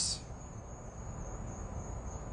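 A faint, steady, high-pitched trill over low background hiss, with the tail of a spoken 's' right at the start.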